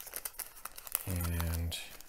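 Thin plastic packaging crinkling and rustling in gloved hands as an optical filter is slid out of its cut-open sealed bag. About a second in, a man gives a short steady hum lasting about half a second.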